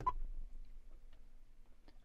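A single short electronic beep from a tractor-cab touchscreen display as an on-screen key is tapped, followed by faint ticks over a low steady hum.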